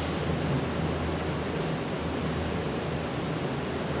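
Steady hiss with a low, even hum underneath: room tone of a lecture room.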